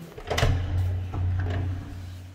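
A door being opened: a sharp latch click about half a second in, followed by a low rumble for about a second and a half.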